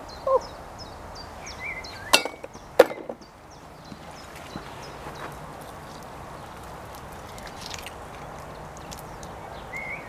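Two sharp clicks a little over two seconds in, about half a second apart, over faint outdoor ambience. A small bird chirps over and over in the first second.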